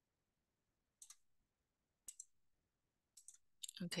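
Faint clicks from a computer mouse, in close pairs about once a second, with a quicker run of clicks near the end.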